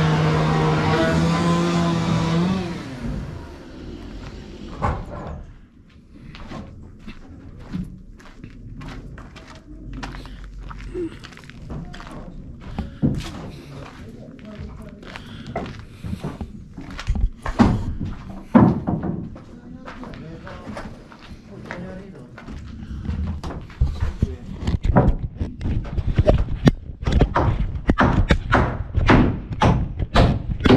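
A steady motor or engine drone that stops about two and a half seconds in, followed by irregular knocks and thuds, as of heavy objects being handled, growing busier toward the end.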